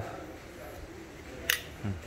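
A single sharp metallic click from a chrome Zippo-style petrol lighter being handled, about one and a half seconds in, as its insert is drawn out of the case.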